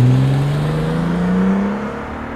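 Bentley Continental GT's W12 engine accelerating as the car drives past and away, its note rising steadily in pitch while slowly growing fainter.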